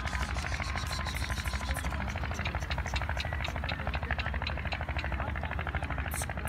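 Pigeon wings flapping in a fast, even clatter as a flock takes off and lands close by, over a steady low rumble.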